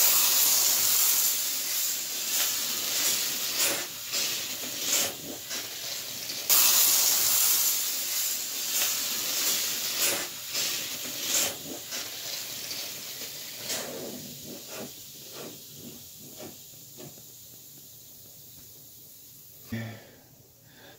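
Baking soda and vinegar reacting in a plastic bottle, jetting gas and foam out of its nozzle with a loud hiss that surges again about six and a half seconds in, then sputters and fades away over the last several seconds as the reaction runs out.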